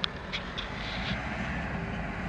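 Steady low rumble of slow city traffic and the car's own engine, heard from inside the car's cabin, with a sharp click right at the start.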